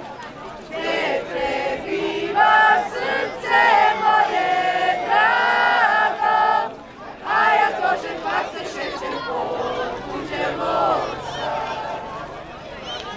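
A group of women and men singing a Međumurje folk song together without instruments, in long held notes with a short break about seven seconds in.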